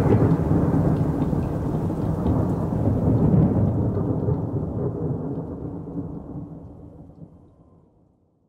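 A long, low rumble of thunder with rain, fading out over the last few seconds.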